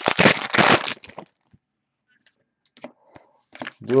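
Foil wrapper of a Panini Prizm trading-card pack torn open by hand: a burst of crinkling and ripping lasting about a second. A few faint ticks follow.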